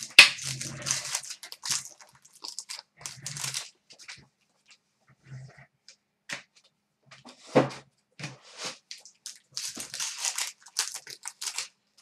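Hockey card packs being torn open and the cards handled and flicked through: an irregular series of crisp rustles, crinkles and clicks, with short gaps between them.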